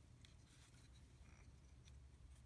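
Near silence: faint rustling and a couple of light clicks from plastic model-kit parts being handled in fabric work gloves.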